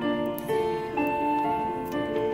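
Show choir music: a slow passage of long held chords.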